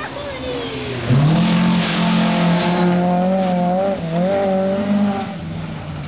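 A rally car's engine passes close on a gravel stage, held at high revs at a near-steady pitch for about four seconds, with a hiss of tyres and gravel over it. The engine note drops away about five seconds in.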